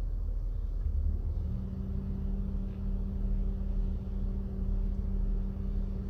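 Low, steady rumble of a car idling, heard from inside the cabin, with a steady hum setting in about a second and a half in.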